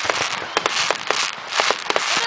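Aerial fireworks going off: a quick, irregular series of sharp pops and crackles over bursts of hiss.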